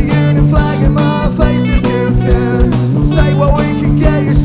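Live rock band playing: two electric guitars, bass guitar and a drum kit keeping a steady beat.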